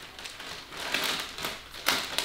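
Clear plastic packet crinkling and crackling as it is handled and the underwear is pulled out of it, with one sharper crackle near the end.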